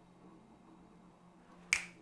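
Faint steady electrical hum from the robot arm's setup, with the motors no longer moving, then a single sharp click near the end.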